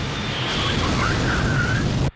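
Cartoon sound effect of rocket motors roaring on a rocket-propelled golf cart racing a Formula One car, a loud steady roar with a low engine hum under it.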